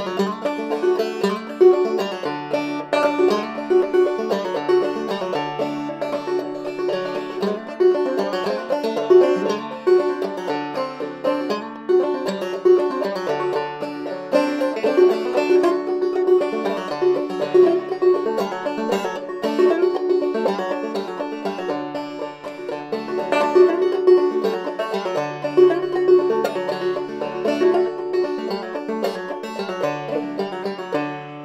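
OME 12-inch Minstrel open-back banjo played solo: a continuous tune of quick plucked notes with a low note coming back again and again.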